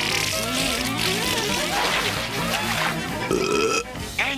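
Cartoon soundtrack: music under a character's vocal sound effects, a long burp-like noise from an animated character.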